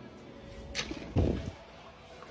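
A short sharp click, then a dull thump just past the middle.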